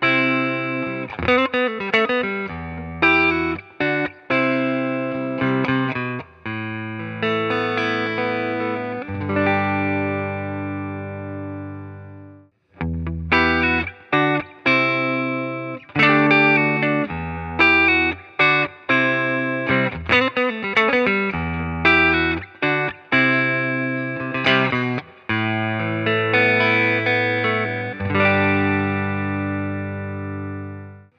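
Telecaster-style electric guitars played through the neck pickup with a clean tone: a phrase of picked notes and chords ending on a held chord. After a brief break about 13 seconds in, a similar phrase is played on a second guitar, again ending on a sustained chord.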